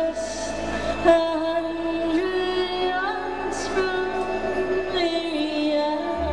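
Live band playing a slow country ballad, with sustained melody notes that glide up into each new note over the accompaniment.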